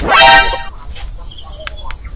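A brief loud buzzy tone lasting about half a second at the start, then crickets chirping steadily, with a couple of sharp clicks near the end.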